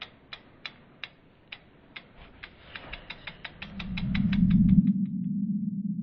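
Logo-animation sound effect: a run of sharp ratchet-like clicks that quicken steadily and stop about five seconds in, while a low hum swells up, peaks just before the clicks end, and settles into a steady low drone.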